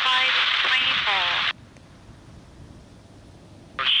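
Air traffic control radio: a thin, hissy voice transmission that cuts off abruptly about a second and a half in. A faint low background follows, and a new transmission starts just before the end.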